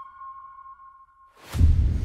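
A single submarine sonar ping: one long steady tone that holds and fades away. About a second and a half in, a sudden loud boom breaks in and leaves a deep rumble that carries on.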